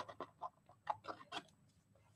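Scissors snipping through patterned paper: a run of faint, short snips over the first second and a half.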